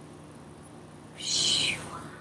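A person's loud, breathy exhale, lasting about half a second and starting a little over a second in.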